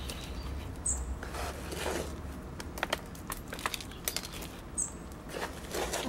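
Gritty potting mix of pumice and lava rock rustling and crunching as fingers press it in around the plant in a plastic pot: irregular small clicks and scrapes.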